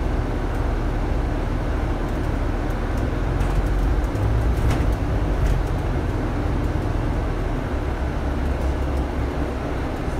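Double-decker bus heard from its upper deck while driving: a steady low engine drone and road rumble, growing a little louder for a couple of seconds near the middle.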